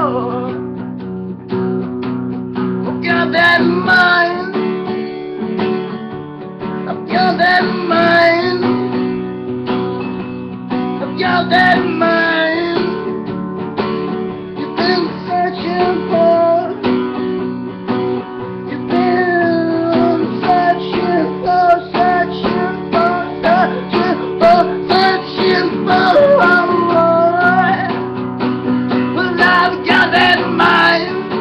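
Acoustic guitar strummed steadily under a man singing, in his own folk song.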